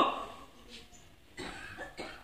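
A man's voice trails off into a pause, and about one and a half seconds in there is a short, quiet cough.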